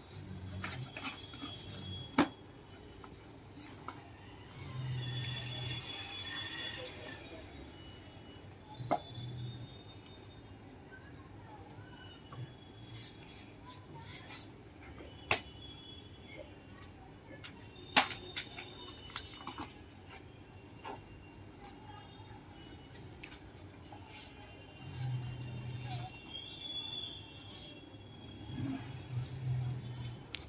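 Paperboard box lids and paper sheets handled by hand on a wooden table: rubbing and shuffling, with a few sharp taps as pieces are set down.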